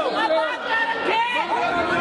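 A group of protesters shouting the slogan 'Go corruption go' together, many raised voices overlapping.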